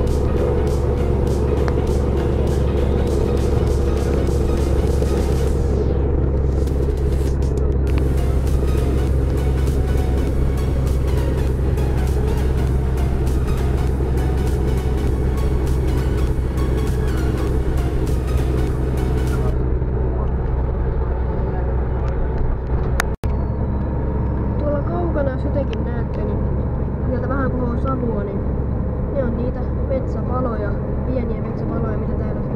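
Music with a singing voice over a steady low drone of a vehicle on the road. There is a brief break about two-thirds of the way through.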